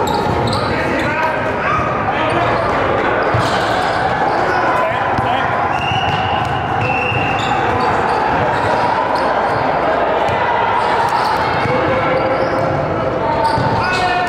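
Basketball dribbling and bouncing on a hardwood gym floor during a scrimmage, with sneakers squeaking and players' and coaches' voices echoing around the gym.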